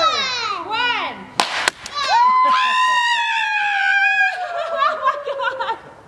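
A hockey stick hits a powder-filled gender-reveal puck with a sharp crack about a second and a half in. It comes between children's excited squealing and a long, high, excited scream that slowly falls in pitch.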